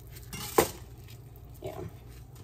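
A single sharp metallic clink about half a second in, a kitchen knife knocking against a hard surface, with quiet handling of raw chicken around it.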